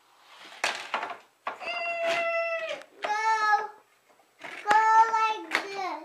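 A young child's high-pitched wordless vocal sounds: three drawn-out notes, each held for about a second and dropping in pitch at the end, with a couple of short noisy bursts before them about half a second in.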